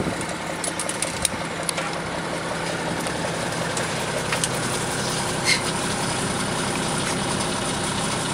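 Armoured personnel carrier's engine idling steadily, heard from inside the troop compartment, with a few light clicks and knocks of kit.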